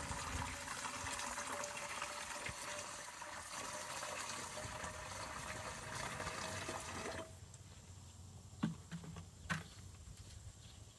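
Liquid rust remover pouring from a plastic jug into a plastic pump sprayer bottle: a steady splashing fill with a faint tone that rises slightly as the bottle fills. The pour cuts off about seven seconds in, followed by two light knocks of plastic being handled.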